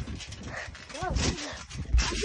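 A child's short shouts of "go" over low thumps and rustling from bouncing on a trampoline with a handheld phone, the loudest thump near the end.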